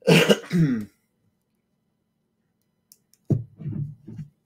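A man clearing his throat: two rough pushes in under a second at the start.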